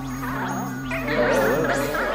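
Layered experimental electronic music: steady low drones under warbling, wavering tones that swell about halfway through.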